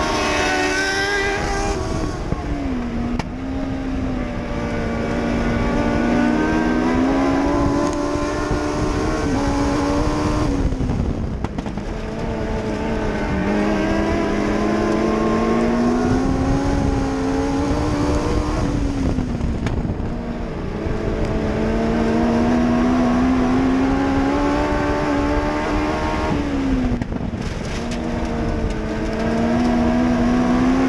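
A dwarf race car's motorcycle engine heard from inside the car, at racing speed on a dirt oval. The pitch climbs steadily along each straight, then dips as the throttle is lifted for the turns, four times, roughly every eight seconds, before climbing again.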